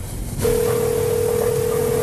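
Telephone ringing tone heard down the line: one steady, single-pitched tone starts about half a second in and holds for about two seconds. It is a transferred call ringing through while waiting for an answer.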